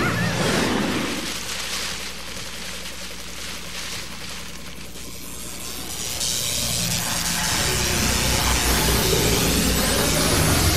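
Cartoon sound effects of a magical energy blast, with crackling, shimmering noise over a low rumble and dramatic background music. It is loud at first, fades through the middle, and swells again from about six seconds in.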